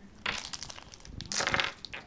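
Foil wrapper from a chocolate surprise egg crinkling as it is handled, in two short bursts.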